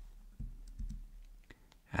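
Several faint, scattered computer mouse clicks, with a soft breath under them about half a second in.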